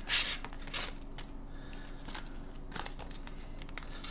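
A sharp knife blade slicing through a sheet of paper in a sharpness test: several short, crisp rasps with paper rustling between them.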